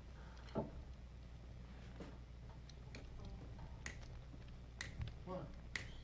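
Finger snaps about once a second over a faint low hum, setting the tempo ahead of a count-in.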